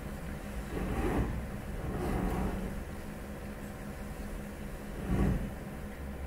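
Steady low hum from a hall's microphone and sound system, with a few brief indistinct noises about one, two and five seconds in.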